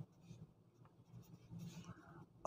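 Faint scratching of a ballpoint pen writing on lined paper, in short strokes, the strongest about a second and a half in.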